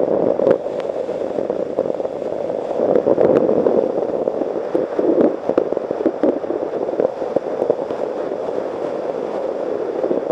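Wind buffeting the microphone of a camera on a moving motorcycle in the rain, a steady rough rumble broken by frequent small crackles and pops as raindrops strike the camera.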